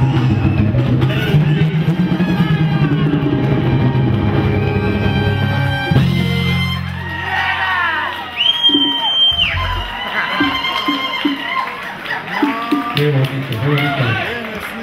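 A live salsa band with horns, bass, keyboard and percussion plays the closing bars of a song and ends on a held final chord about six seconds in. Whoops, a shrill whistle and voices follow.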